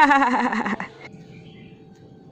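A woman's short laugh, a run of pulses falling in pitch that dies away within the first second. After it, only a faint steady hum remains.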